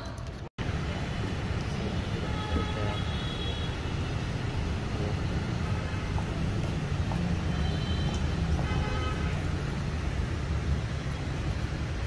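Outdoor street ambience: a steady low rumble of city traffic, with faint short tones, typical of car or motorbike horns, about three seconds in and again around eight to nine seconds. The sound cuts out for an instant just after the start.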